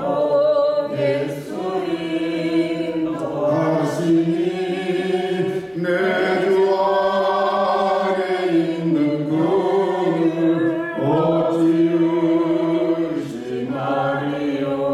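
A hymn sung slowly in Korean, a man's voice leading with long held notes and gliding phrases.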